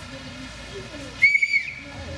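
A short, steady high-pitched whistle about a second in, lasting about half a second and dipping in pitch as it ends.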